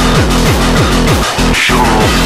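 Hard electronic drum and bass (darkstep) track, with a bass note sweeping downward about five times a second. The bass briefly drops out about one and a half seconds in under a short noisy sweep, then comes straight back.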